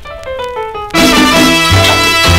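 A salsa Latin-jazz record playing on a turntable: a solo piano line alone for about a second, then the full band comes back in with bass and percussion.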